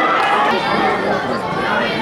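Many voices talking and calling out at once: a football crowd's chatter, with no single voice standing out.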